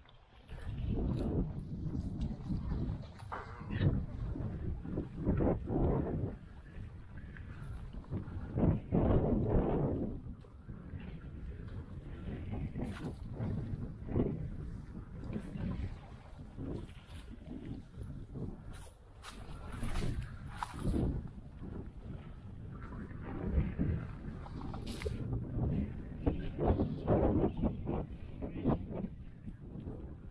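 Footsteps and rustling of someone walking through dry brush and sagebrush, in irregular surges of low crunching and brushing noise with scattered short sharp ticks of snapping twigs.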